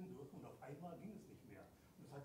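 Faint speech from a person talking well away from the microphones.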